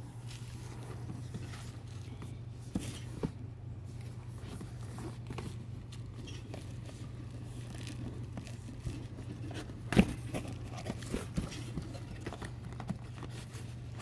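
Faint handling noise of a cardboard box being turned over and laid down: light scrapes and small taps, with one sharper knock about ten seconds in, over a steady low hum.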